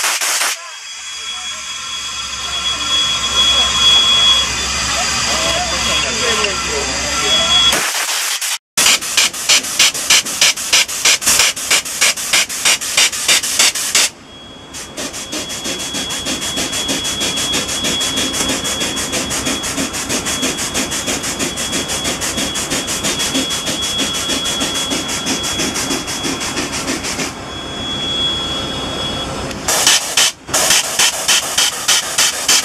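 Air-powered grease gun working on a steam locomotive's driving-rod bearings, clattering in a rapid even run of strokes, two or three a second, over the locomotive's steady hiss.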